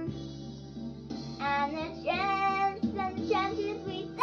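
A child singing a song over backing music.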